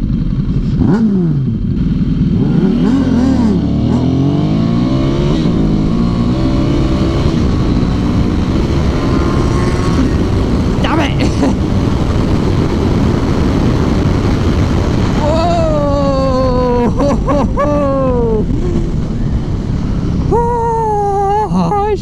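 Ducati Hypermotard 796's air-cooled V-twin engine accelerating hard through several gears in the first few seconds, the revs rising and dropping with each shift. It then runs at high speed with heavy wind noise on the microphone, and near the end the revs fall in steps as the bike slows.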